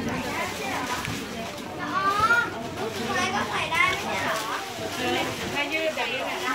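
People talking in a busy street market, some in high voices, over a steady background hubbub of the crowd.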